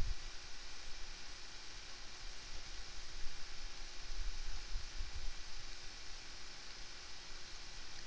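Steady low hiss of room tone with a faint hum and a few soft low rumbles; no distinct event stands out.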